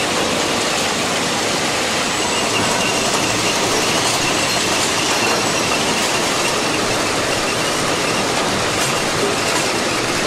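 Swietelsky RU 800 S track-relaying train at work: a steady, loud mechanical din of rails and concrete sleepers being handled over the ballast. A faint high squeal is heard for a few seconds in the middle.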